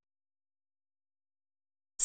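Silence: nothing audible, not even room tone.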